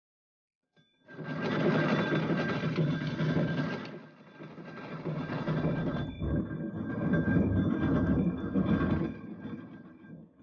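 Alarm bell ringing continuously and loudly, with a brief dip about four seconds in.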